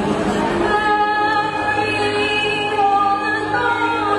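Live singing over backing music from a musical's score, with long held notes starting about a second in.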